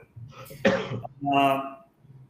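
A man clearing his throat: a short rough burst, then a brief held voiced sound.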